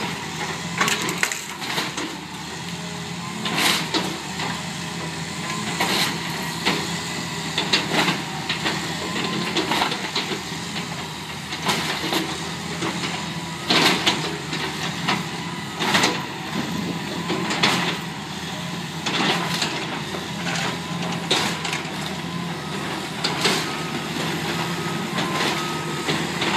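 John Deere hydraulic excavator demolishing a wood-frame building: timber cracking, splintering and crunching in irregular sharp snaps every second or two, over the steady running of the excavator's diesel engine.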